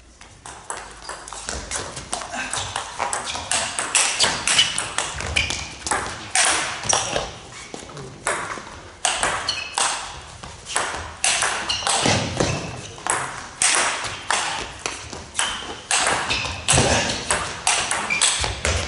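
A long table tennis rally in a large hall: the ball clicking off rackets and the table in a quick, steady back-and-forth.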